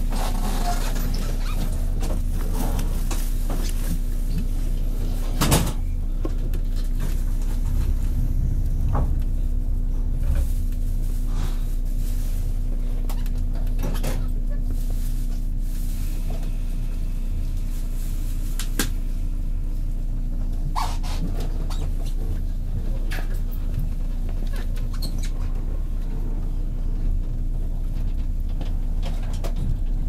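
Inside the car of a 183-series electric train: a steady low hum from the onboard equipment, with scattered light clicks and knocks and one louder knock about five seconds in.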